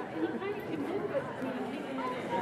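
Indistinct chatter of people talking in the background.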